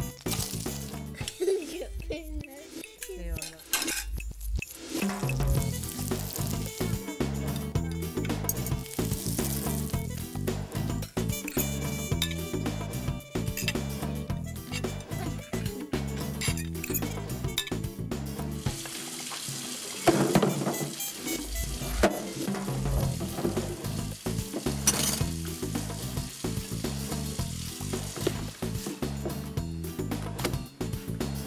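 Fish cakes sizzling as they fry in butter and a little oil in a pan, under background music.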